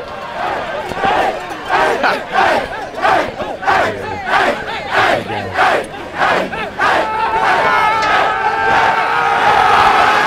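A football team's players huddled together, shouting a rhythmic group chant at about two shouts a second, then breaking into one long sustained yell for the last few seconds: a team celebration chant.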